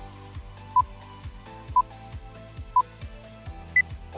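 Quiz countdown timer beeping once a second over background music with a steady beat: four short electronic beeps, the last one higher-pitched as the count runs out.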